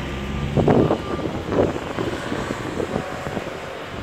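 Outdoor city background noise: a steady low engine rumble, strongest in the first second, with wind on the microphone.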